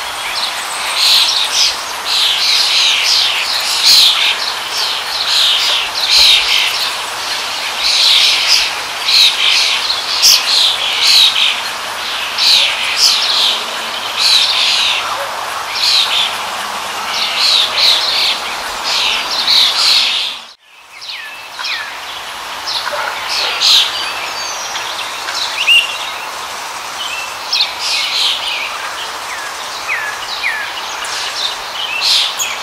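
Small songbirds chirping and twittering in a dense, busy chorus over a steady background hiss. About two-thirds of the way through, the sound drops out for a moment and comes back with fewer, sparser chirps.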